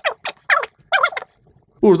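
Three short, high-pitched, chirping snippets of a man's voice, each falling in pitch. This is the footage's own audio played back sped-up and chopped while the editing timeline is scrubbed.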